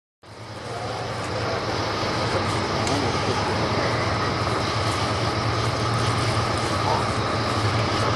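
Steady low rumble of an approaching CSX freight train's diesel locomotives, an AC44CW and an SD40-2, fading in over the first second.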